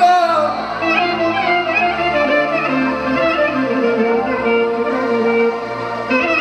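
Instrumental break in live Balkan party music: a lead melody line with bends and quick ornaments over sustained band accompaniment, with no vocals.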